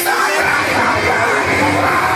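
Loud rock music with a singing voice, playing steadily.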